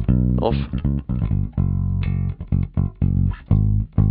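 Recorded bass guitar line of separate plucked notes, played solo through a compressor and high-frequency EQ, with the warmth control just switched off.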